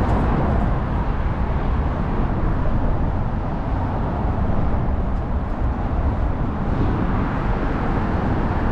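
Steady traffic noise from the bridge: a continuous, even rumble of vehicles with no single pass or horn standing out.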